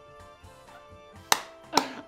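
Quiet background music, then two sharp smacks about half a second apart in the second half, much louder than the music.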